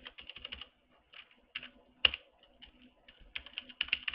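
Computer keyboard typing. A quick run of keystrokes comes at the start, then scattered single key clicks, and another quick run near the end.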